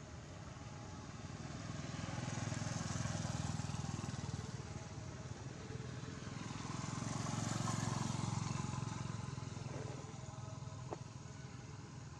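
Motor vehicles passing by on the road, two passes one after another, each swelling and then fading away. A faint click near the end.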